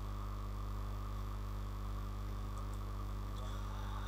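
Steady low electrical hum with a faint hiss, unchanging throughout: mains hum in the recording.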